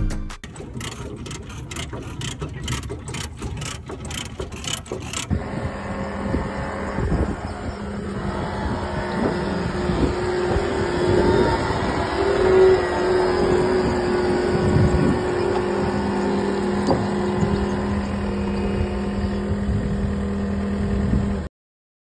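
John Deere 325G compact track loader's diesel engine running steadily while blowing heavy smoke, a fault the mechanics think may be an injector. It is preceded by a run of evenly spaced knocks, about two a second, for the first five seconds.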